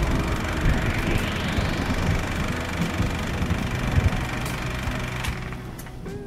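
Cinematic logo-outro music and sound effects: a dense low rumble throughout, with a rising whoosh about a second in, fading out near the end.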